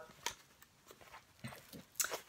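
A few faint clicks and light handling noise as a snap-closure wallet is opened and unfolded by hand.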